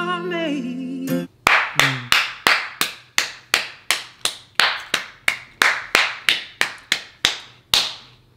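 A man's sung note held for about a second, then one person clapping slowly and steadily, about three sharp claps a second for six seconds.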